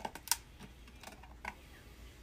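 An eyeshadow palette being handled and opened by hand: a few light, irregular clicks and taps, the sharpest about a third of a second in.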